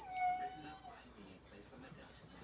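A cat meowing once: a single drawn-out call of about a second that rises and then holds a steady pitch.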